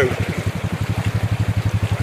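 ATV engine idling with a steady, rapid low putter, over the rush of a creek running fast over rocks.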